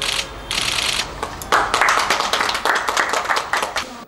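Applause: scattered clapping that thickens into fuller applause about a second and a half in, as a ceremonial ribbon is cut.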